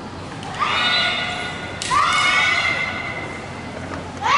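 Two long, high-pitched kiai shouts from naginata kata performers, each rising in pitch and then held for about a second. A sharp knock comes just before the second shout.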